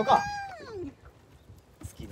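A woman's drawn-out, whining wail of dismay ('n-aah'), rising briefly and then falling away, ending about a second in: her groan of disappointment at reeling up an unwanted lizardfish.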